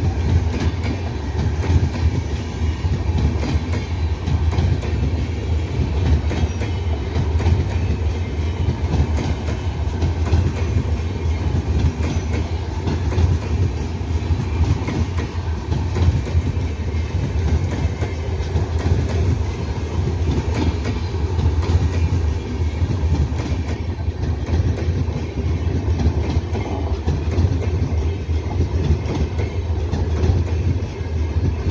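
Indian Railways LHB passenger coaches passing close by at speed: a steady, loud rumble of steel wheels on the rails, with continuous wheel clatter and clicks over the track.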